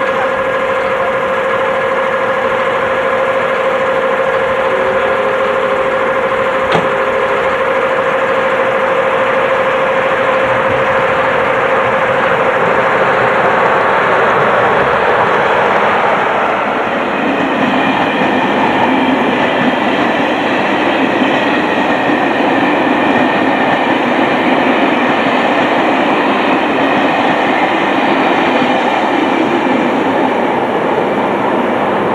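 Passenger train running through a station. A steady hum comes first; from about halfway through it gives way to the denser rolling noise of the coaches' wheels on the rails as they pass close by.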